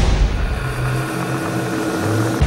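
A broadcast transition sound effect: a steady whooshing drone with a couple of low held hum tones that come in about half a second in.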